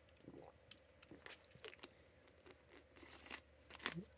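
Near silence with faint, scattered small crunches and clicks from a plastic water bottle as someone drinks from it and handles it.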